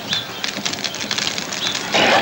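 Birds calling outdoors, a few short high chirps, over a busy, even clatter of small knocks.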